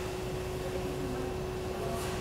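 Steady background hum of a public place in a pause between words, an even noise with one constant low tone running through it.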